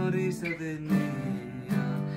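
Twelve-string acoustic guitar being strummed: a few sharp strokes, each followed by ringing chords.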